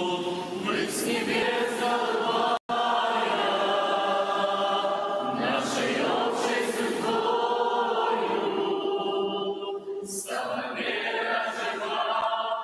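A large church choir and congregation singing a Russian-language hymn together in a reverberant hall, in long held phrases. The sound cuts out completely for a split second a little over two seconds in.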